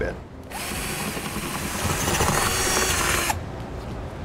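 Cordless drill boring a pilot hole out to 3/8 inch in steel door sheet metal, running for about three seconds from about half a second in, then stopping.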